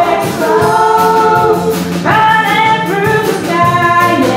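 Live band music: female vocalists singing long held notes together, a new note sliding up about halfway through, over electric guitar, bass, keyboard and drums.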